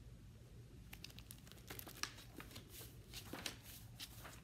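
Faint rustling and crinkling of a hardcover book being opened and its pages turned: a run of soft clicks and crackles starting about a second in.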